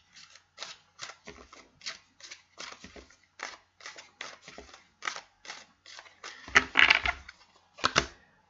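Deck of tarot cards being shuffled by hand, a run of short soft card slaps about two or three a second, louder for a moment near the end, then a card set down on the table.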